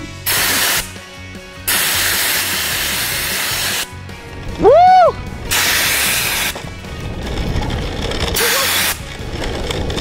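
A CO2 fire extinguisher discharging through a diffuser in four separate blasts of hiss, the longest about two seconds, as it thrusts a longboard along. A short rising-and-falling whoop comes about halfway through.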